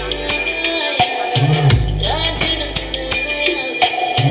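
Loud dance music with a drum kit and heavy bass drum, played through a large DJ sound system; a deep bass note comes in about a third of the way through and holds for most of the rest.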